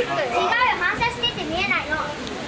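Children's voices talking, with pitch rising and falling.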